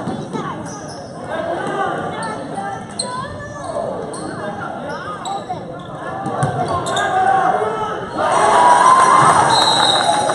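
A basketball bouncing on the gym floor during play, with many voices of players and spectators echoing in the hall. About eight seconds in, the crowd noise swells suddenly louder.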